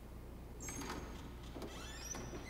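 A door's hinges creaking: a few short, high squeaks that rise and fall, faint at first and picking up about a second and a half in, over a low steady hum.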